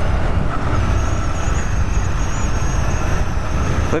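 Riding noise from a Honda CG 160 Titan motorcycle moving slowly: wind rushing over the body-mounted camera's microphone, mixed with the bike's single-cylinder engine running steadily.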